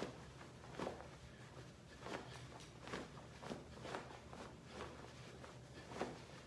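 A faint series of short swishes, about one to two a second, from the sleeves of a martial-arts uniform as a man throws alternating blocks and punches.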